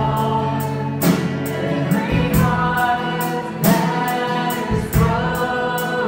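A worship song: a man sings into a microphone while strumming an acoustic guitar, with other voices singing along. The sung notes are held long over chords struck about once a second or two.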